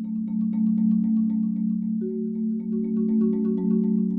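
Marimba played with four soft yarn mallets: rolled low notes held steadily under a flowing line of higher struck notes, about four a second. A new held note comes in about halfway through.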